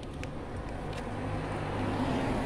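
Motorcycle engine idling steadily, a low even hum.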